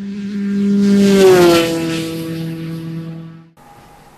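A 250cc superkart engine driving past at speed. Its note swells, drops in pitch as it passes about a second in, then fades and is cut off abruptly about three and a half seconds in.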